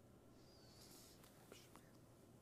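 Near silence: faint room tone with a soft breathy hiss about a second in and a few faint clicks.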